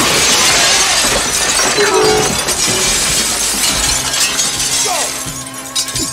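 A large plate-glass shop window smashing as a body crashes through it, then broken glass showering down for about four seconds and thinning out.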